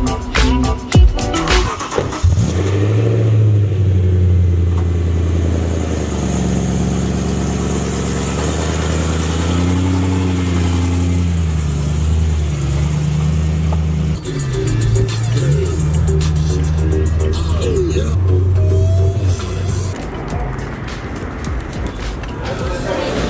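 BMW E90 M3's 4.0-litre V8 starting about two seconds in and then idling, its pitch rising and falling a little at times before it drops away near the end.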